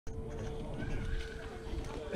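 Faint voices of people nearby over a steady low hum, with wind rumble on the microphone.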